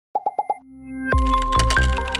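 Four quick pops in a row, the sound effects of an animated outro, then music that swells in and settles into a steady beat about a second in.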